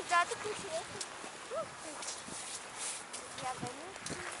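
Faint voices of people in the distance, talking and calling out now and then, with a few crunching clicks of footsteps on packed snow.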